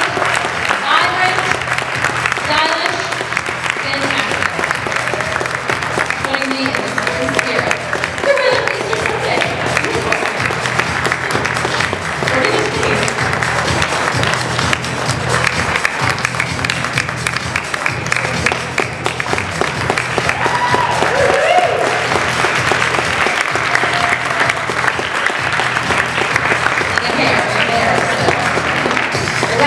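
Audience applauding steadily over background music, with scattered voices from the crowd.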